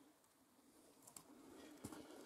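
Near silence: faint outdoor background noise with a few soft clicks, growing slightly louder toward the end.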